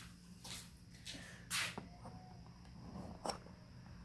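Faint handling noises from a handheld camera being moved: a few short rustles, the loudest about a second and a half in, and a click a little past three seconds, over a steady low room hum.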